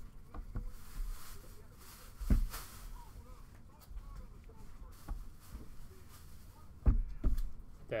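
Stacks of trading cards being handled and set down on a table: soft rustling of card stock, with a few knocks as the stacks are tapped square, a loud one about two seconds in and two close together near the end.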